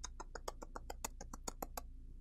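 ASMR-style mouth sounds close to the microphone: a quick run of about fifteen sharp mouth clicks and lip smacks, some eight a second, stopping shortly before the end.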